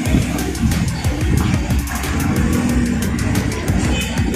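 Music with a steady beat from a TV broadcast, playing through the speaker of an old Sharp CRT television.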